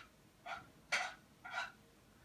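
Three short breathy puffs of breath, about half a second apart.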